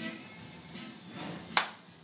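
A single sharp hand clap about one and a half seconds in, over faint music.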